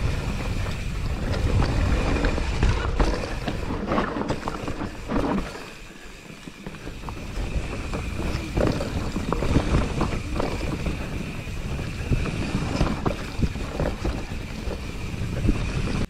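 Mountain bike descending a rough dirt forest trail at speed: wind buffeting the microphone, tyres rolling over dirt and roots, and the bike rattling and knocking over bumps, with a thin steady high whine throughout. It runs quieter for a moment about six seconds in.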